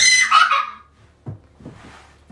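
A young child's high-pitched squeal, loud and lasting under a second, followed by a few light taps.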